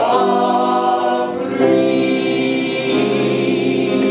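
A small group of young mixed voices singing together in long held chords, the chord changing about one and a half seconds in.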